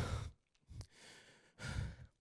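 A man's single audible breath into a handheld microphone, about one and a half seconds in, just after a spoken question trails off.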